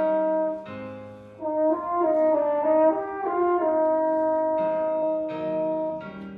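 French horn playing solo: a long held note, then a brief softer low passage, then a run of moving notes that settles into another long held note, softening near the end.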